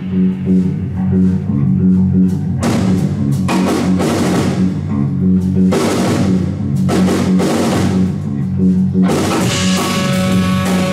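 Progressive rock-jazz band playing live: a repeating electric bass line under a drum kit with several cymbal crashes, with electric guitar.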